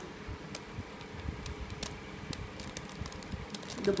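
Plastic 3x3 Rubik's cube being turned by hand: scattered faint clicks and rattles of the layers rotating, over the steady hum of a fan in the room.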